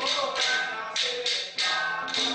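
Temple ritual percussion: sharp strikes about two to three times a second, each with a bright ringing tail, over a steady held tone.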